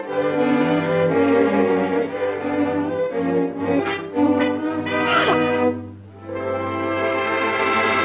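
Orchestral cartoon score led by brass, with a quick upward glide about five seconds in and a short dip in loudness just after.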